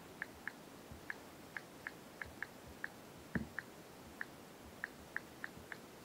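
Typing on a smartphone's on-screen keyboard: faint, short ticks, one per key press, coming at an uneven pace of two or three a second, with one louder knock about halfway through.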